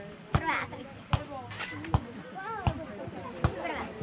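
Faint voices of people talking in the background, with a short sharp knock repeating evenly a little more than once a second.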